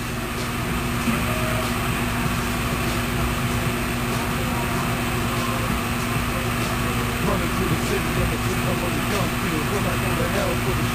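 Steady background hum with one constant low tone and a rumble beneath it.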